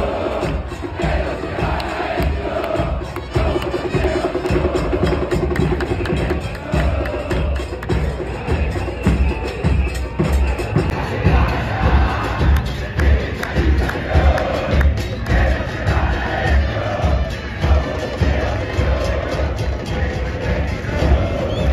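A stadium crowd of football supporters singing a chant in unison, backed by steady bass drum beats.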